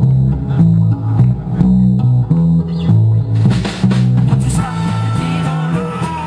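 Live band playing an instrumental passage: a prominent bass guitar line under acoustic and electric guitars, with drums and cymbals coming in about three seconds in and a sustained lead melody entering near the end.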